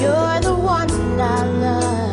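A slow song: a singer's wavering melodic line over steady sustained accompaniment.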